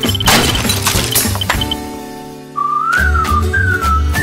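Cartoon sound effects over music: a referee's whistle trill ends just after the start, then a crash with a shattering, breaking sound lasts about a second and dies away. Past halfway a short music sting begins, with a whistle-like melody that slides up and down.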